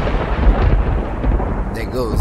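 Thunder-and-rain sound effect: rumbling thunder with a rain-like hiss, slowly dying away.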